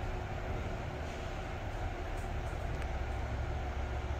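Otis cargo lift car travelling down between floors: a steady low rumble with a faint hum.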